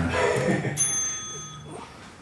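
A voice in the first half-second, then a sharp metallic clink about three-quarters of a second in that rings on with a few clear high tones for about a second, as of a steel piece of gym equipment struck.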